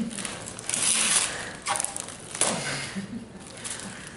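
Wrapping paper tearing and crinkling as a small gift is unwrapped, in a few short rustling bursts.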